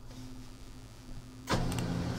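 HP LaserJet printer starting up about one and a half seconds in, its motor running with a steady hum, with a couple of light clicks.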